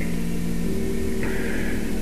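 Hiss and a low steady hum from an old 1970s sermon tape recording, with faint sustained tones underneath that shift slightly about a third of the way in.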